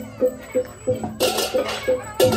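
Balinese gamelan accompaniment playing a steady beat of struck metal notes, about three a second. Cymbals clash in about a second in. A brief high, wavering cry sounds over the music in the first half.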